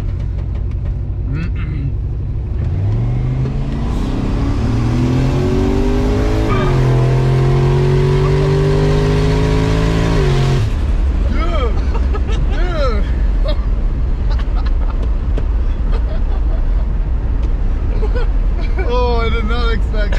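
Mercury Marauder's V8 heard from inside the cabin at full throttle. The engine note climbs in pitch from a few seconds in, breaks once at a gear change, climbs again, then drops away suddenly as the throttle closes about halfway through. After that comes steady road noise.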